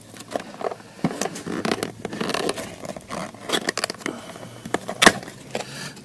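Small cardboard retail box being opened by hand: irregular scraping, rustling and crackling of the card, with one sharp click about five seconds in.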